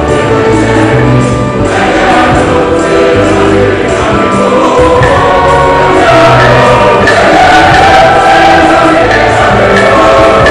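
A choir singing a hymn with instrumental accompaniment, loud and continuous.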